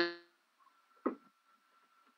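A woman's voice trailing off at the start, then a pause of near silence on a video call, with a faint steady high hum and one brief faint sound about a second in.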